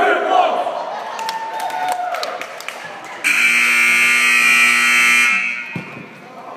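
Gymnasium scoreboard horn sounding one loud, steady blast of about two seconds, starting suddenly about three seconds in, as the game clock reaches zero at the end of a period. Before it, crowd voices and a few sharp knocks echo in the gym.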